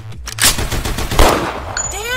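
Gunfire sound effects: a few sharp shots, then a louder, longer blast a little after a second in.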